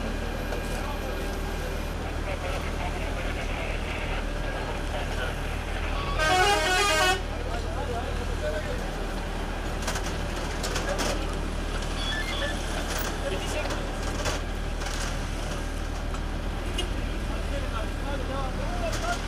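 A vehicle horn sounds once for about a second, about six seconds in, over a steady low hum of engines and traffic and background voices.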